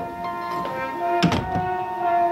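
Background music with steady held chords, and a heavy wooden door shut with a single thunk about a second and a quarter in.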